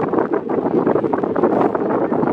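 Steady wind noise buffeting the microphone on the open deck of a boat at sea.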